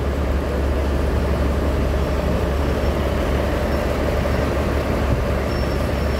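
Taiwan Railways DR2300-class diesel railcar DR2303 idling with a steady low hum while stopped at a platform.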